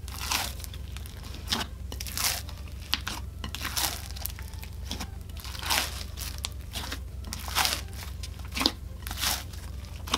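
Hands squeezing and folding a large mass of mixed slime in a glass bowl, giving a dozen or so sharp, irregular pops and crackles as the slime is worked.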